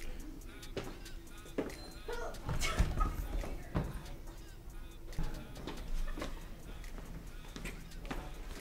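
Scuffling and knocks on a hard hallway floor, with one louder thump about three seconds in as a person is knocked to the floor.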